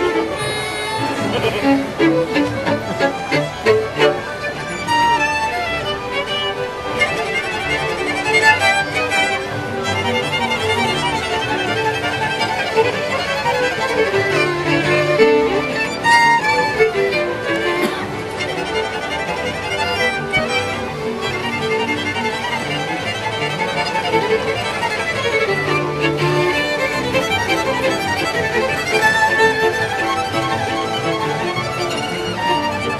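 Trio of two fiddles and a cello playing a czardas, the fiddles carrying the melody in quick runs up and down over the cello.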